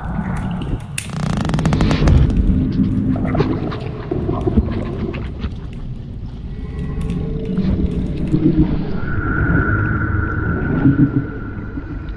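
Soundtrack sound design of an immersive art film: a dense low rumble with scattered clicks and knocks, joined by a steady high tone about nine seconds in.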